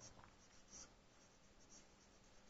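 Faint squeaks and scratches of a marker pen writing on a whiteboard, in several short strokes, the loudest about three quarters of a second in.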